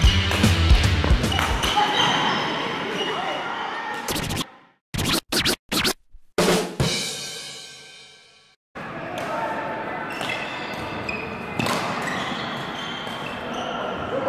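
Upbeat background music with a beat that cuts off about four seconds in. A short logo sting follows: a few sharp hits and a ringing tone that fades away. Then comes the sound of an indoor badminton hall, with rackets striking a shuttlecock now and then over a steady room hum.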